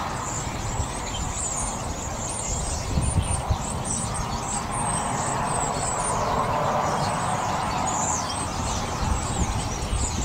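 Steady rumble of road traffic, with short, thin, high bird calls sliding downward several times over it. A few soft low thumps come about three seconds in.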